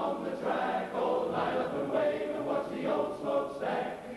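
A large male barbershop chorus singing a cappella in close harmony.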